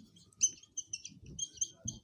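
Marker squeaking on a whiteboard in a quick run of short, high-pitched squeaks as a word is handwritten.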